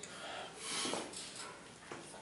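A man breathing out hard through his nose and mouth, a soft noisy rush, as he braces and starts bending an 80 kg power twister spring bar, with a faint click near the end.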